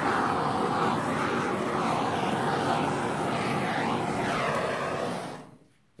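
Handheld torch running with a steady hiss of flame, fading out about five seconds in.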